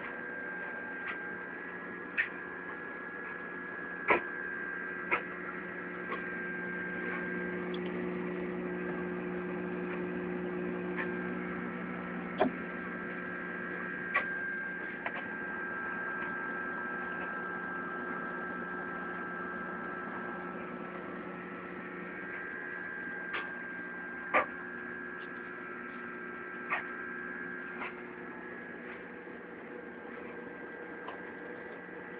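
Steady hum of an aquarium's pump and fans, holding a few steady tones, broken by sharp clicks every few seconds at an uneven pace.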